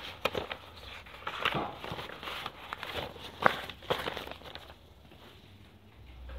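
Sheets of paper rustling and crinkling as they are handled close to the microphone, a string of short crackles that eases off near the end.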